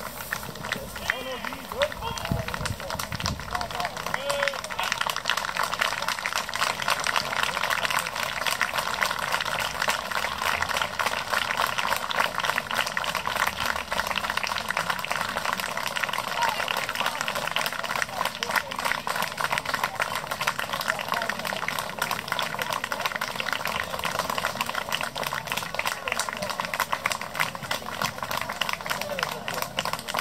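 Crowd applauding steadily, a dense continuous patter of many hands, with voices mixed in.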